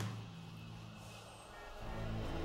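Low, held bass tones of the film's soundtrack, with a short sharp hit at the start as the picture cuts. The music swells louder near the end.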